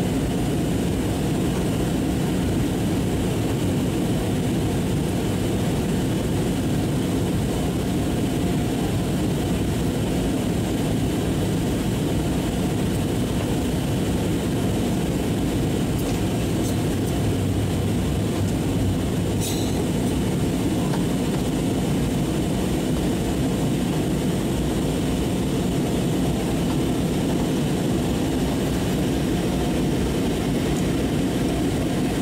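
Steady low cabin roar of an airliner in flight, jet engine and airflow noise heard from a window seat, with one brief click about two-thirds of the way through.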